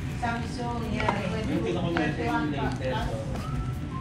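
Indistinct background voices, with a wooden spatula tapping and scraping a couple of times on a flipped quesadilla in a nonstick electric griddle pan.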